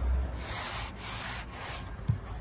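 A hand rubbing across the textured dashboard trim of a Renault Rafale, a dry scratchy rub in about three strokes.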